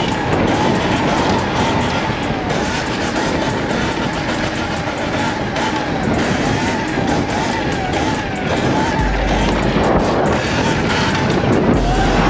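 Steady rush of wind over the microphone while riding a Sur-Ron electric dirt bike at speed down a street, with music underneath.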